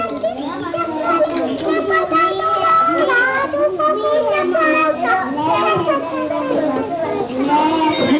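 A group of young children's voices, several high voices overlapping and calling out at once without a pause.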